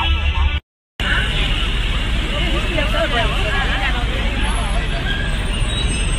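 Music cuts off to a moment of silence about half a second in. Then comes outdoor street noise: a steady rumble of traffic with a babble of several people's voices over it.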